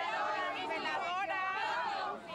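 Many people talking at once: crowd chatter of overlapping voices.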